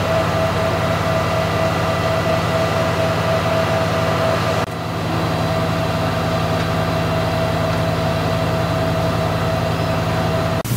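Patriot air-defence battery's power generators running: a loud, steady machine drone with a constant high whine over it. The sound dips briefly about five seconds in.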